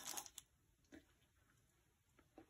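Near silence, with a few faint, brief rustles in the first half-second and one soft click about a second in, as an oat ball is lifted off parchment paper.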